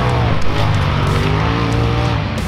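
Polaris RZR side-by-side race car engine revving, its pitch rising and falling as the car climbs, mixed with loud rock music with guitar.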